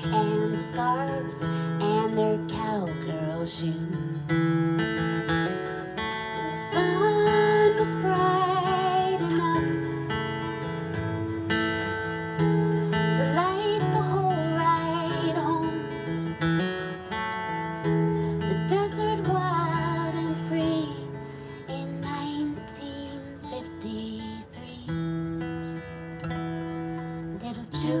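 Acoustic guitar played with a woman singing over it, her held notes wavering with vibrato.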